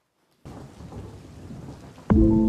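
Steady hiss with a low rumble, like rain and thunder, starting abruptly about half a second in.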